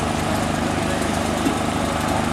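Heavy construction machinery engine running steadily at an even pitch, with a light knock about one and a half seconds in.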